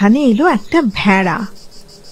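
Steady high insect chirring that carries on alone after a woman's narrating voice stops about a second and a half in.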